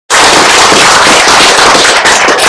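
An audience applauding: dense, loud clapping.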